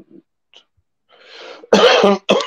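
A man coughing. A breathy intake builds up, then loud, sharp coughs burst out near the end.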